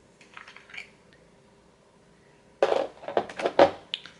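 Small plastic cosmetics container handled at close range: a few faint clicks in the first second, then a louder run of clicks and scraping in the last second and a half.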